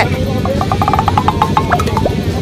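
Motorcycle riding noise picked up by a helmet-mounted camera microphone: a steady low rumble of engine and wind. In the middle, a faint rapid run of short pitched ticks lasts about a second, at roughly ten a second.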